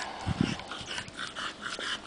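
English bulldog puppy on a leash making a series of short, soft breathy sounds, with a couple of low thumps about a third of a second in.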